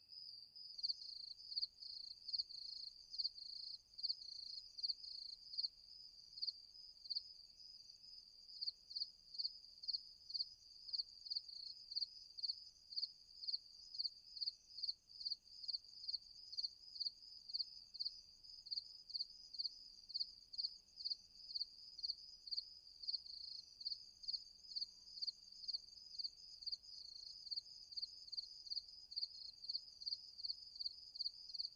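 Crickets chirping in a steady, even rhythm at night, with a second, higher-pitched insect trill joining about a second in.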